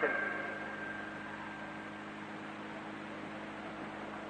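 Steady hiss and low hum of an old 1955 hall recording with no one speaking, with a faint high tone that fades away over the first two seconds.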